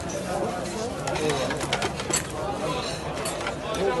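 Many people talking at once in a busy restaurant, with a few sharp clinks and clacks between about one and two seconds in.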